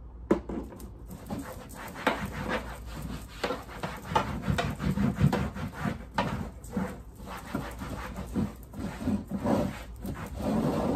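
A cloth rubbing over the textured plastic lid of a trash can in quick, irregular back-and-forth wiping strokes, starting about two seconds in.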